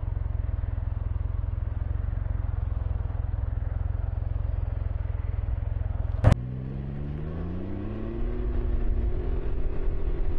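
Can-Am Ryker three-wheeler's engine idling with a steady low rumble at a stop, then a sharp click about six seconds in. After the click the engine note rises as the trike pulls away and accelerates, levelling off near the end.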